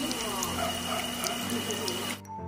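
Sweet potato turon deep-frying in a pan of hot oil: a steady sizzle with fine crackles.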